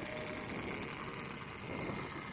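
Sailboat's engine running steadily as the boat motors slowly, with a faint steady high tone over it.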